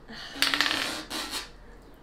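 A game die rolled onto a hard countertop: a rattling clatter of quick small clicks about half a second in, then a shorter clatter as it settles, after a soft sigh at the start.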